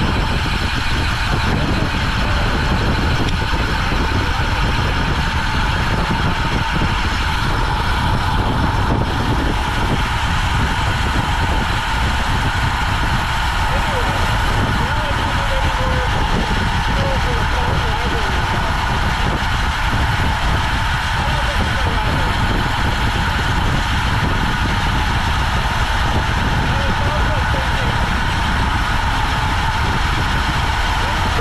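Loud, steady wind rush over a bike-mounted action camera's microphone while riding a road bike at around 30 mph, mixed with tyre noise on asphalt.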